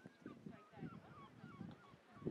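Faint honking of a flock of geese, many short calls overlapping one another.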